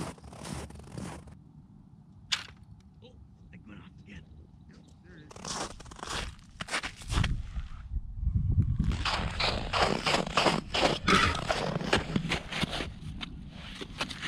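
Boots and hands crunching and scraping in snow and slush at the edge of an ice-fishing hole, quiet at first with one sharp click about two seconds in, then a dense, irregular crunching through the last five seconds.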